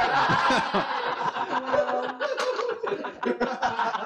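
Several people laughing at once, their laughs overlapping.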